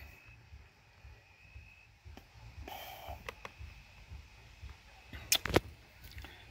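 Low background noise with a few faint clicks around the middle, then two or three sharp clicks or taps in quick succession about five seconds in.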